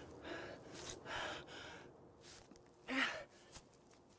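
A man breathing hard and gasping from exertion while carrying a person on his back: a run of heavy breaths, the loudest a strained gasp with a short voiced catch about three seconds in.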